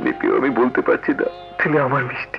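Film soundtrack: a man's voice, broken and emotional, over sad background music with long held notes.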